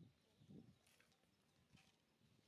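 Near silence, with a couple of faint low thumps in the first second and a few faint ticks later.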